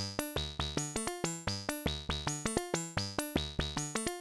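Modular synthesizer sequence of short notes at several pitches, about six a second, each snapped open by a Frequency Central System X ADSR in its fast mode driving the cutoff of two Oakley Journeyman filters: a sharp attack on every note and a quick decay. It is quite snappy, jumping in and cutting out quickly.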